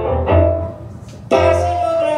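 Electric stage piano playing chords over a low bass note, with chords struck at the start and again just past halfway through.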